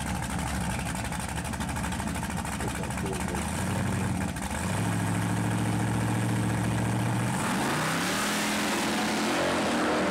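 Drag-racing Fox-body Ford Mustang at the starting line: its engine runs rough and uneven, then is held at a steady higher rev about halfway through. Near the end it launches, getting louder and climbing in pitch as it accelerates away down the strip.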